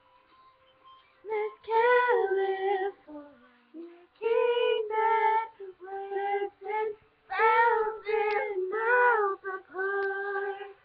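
Girls' voices singing a song unaccompanied in short phrases, starting about a second in.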